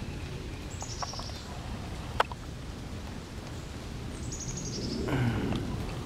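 A bird calling twice outdoors, each call a short run of high notes stepping downward, about a second in and again about four and a half seconds in, over steady background noise. A single sharp click comes about two seconds in.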